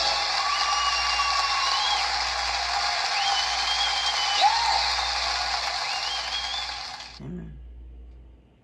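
Studio audience applauding at the end of a televised song performance, cutting off suddenly about seven seconds in.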